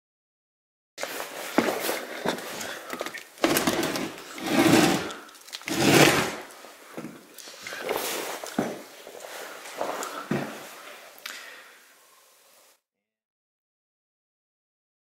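Clunks, knocks and scraping from a wooden door with a round knob being handled and swung, in a small concrete-walled room. The sounds start about a second in and stop shortly before the end, loudest near the middle.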